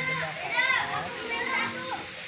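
Children's voices: several children talking and calling out over one another.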